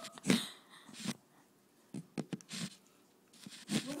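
Small dog sounds: a few short breathy noises and light clicks, scattered with quiet gaps between them.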